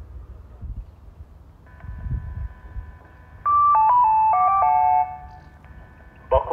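Railway station public-address chime through an outdoor horn loudspeaker: a short run of electronic notes, mostly stepping downward, about three and a half seconds in and lasting about a second and a half. It is the signal that a platform announcement is about to follow.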